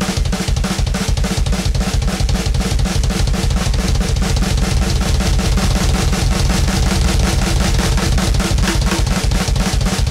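Drum kit playing a repeating double bass fill: hand strokes on the snare and toms alternating with pairs of bass drum kicks from a double pedal, in a rapid, even stream of strokes.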